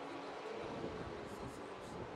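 Faint drone of open-wheel race cars running on the circuit, heard as a steady noisy haze with a thin engine tone early on.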